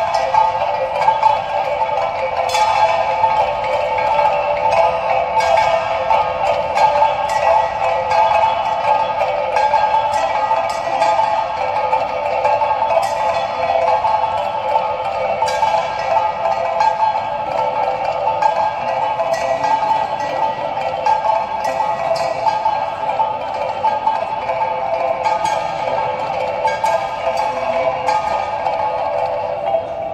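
Talempong music: small bronze kettle gongs, held in the hand, struck in a fast continuous rhythm. Many ringing metallic tones overlap into a dense chime.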